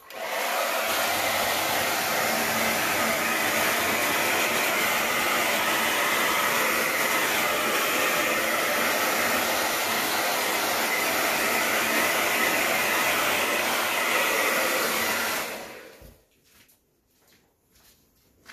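A handheld hair dryer blowing steadily while it dries wet acrylic paint on a canvas. It is switched off about fifteen seconds in and its sound dies away.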